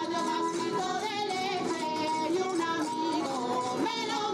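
Regional folk music with singing and plucked string instruments, a melody that keeps rising and falling at a steady level.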